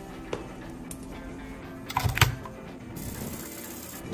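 Background music, with a sharp click near the start and a cluster of clicks and a knock about two seconds in, from a small plastic ultrasonic cleaner being handled. A hiss comes in during the last second.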